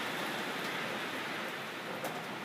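Steady hiss of classroom background noise, with no distinct events.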